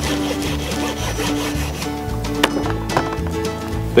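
A long jerky knife sawing back and forth through an elk roast, the blade rubbing along a hardwood jerky board, under steady background music.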